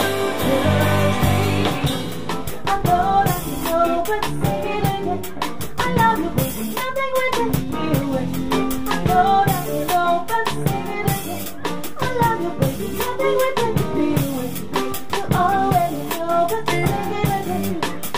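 A live band playing a funk-soul groove: drum kit with snare and bass drum, electric bass, electric guitars and keyboards, with a bending melodic lead line over the beat.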